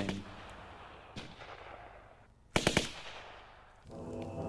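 Gunfire: a faint single shot about a second in, then a short burst of several rapid shots from an automatic weapon a little past halfway, each with an echoing tail.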